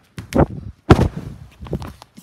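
A quick run of sharp thumps and knocks, loudest about half a second and a second in, with smaller ones near the end.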